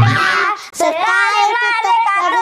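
Children singing loudly in high voices, with a brief break about halfway through.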